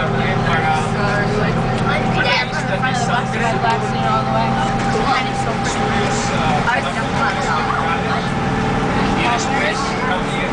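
School bus running on the road, heard from inside the cabin as a steady low hum, with passengers chattering over it.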